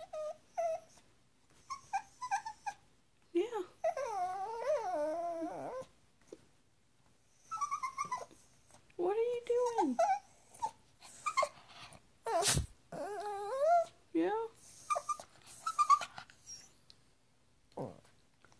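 A puppy whining: short high whimpers, then several longer whines that waver up and down in pitch for a second or two at a time. A single sharp knock sounds about two-thirds of the way in.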